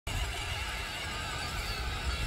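Electric motors and gearboxes of children's ride-on toy vehicles whining, faint and wavering in pitch, over a low rumble.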